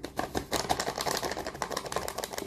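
Plastic flour bag crinkling as it is squeezed and folded in the hands: a dense run of rapid crackles.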